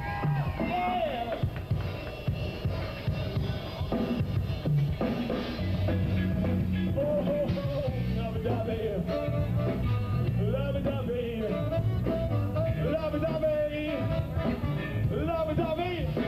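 Live rock band playing continuously: a drum kit and bass hold a steady groove under a wavering melodic lead line.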